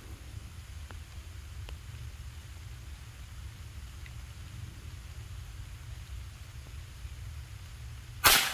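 Quiet outdoor background: a steady low rumble and faint hiss, with a couple of faint ticks about one and two seconds in. No shot is fired.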